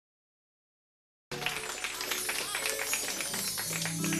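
Silence for about a second, then applause from a studio audience over a live band holding sustained chords.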